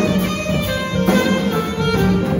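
Student jazz band playing, with sustained ensemble notes and a sharp accent about a second in.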